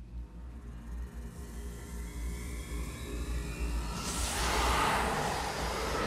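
Film soundtrack: a low rumble with rising music above it, swelling about four seconds in into a loud, bright, shimmering whoosh of magic sound effect.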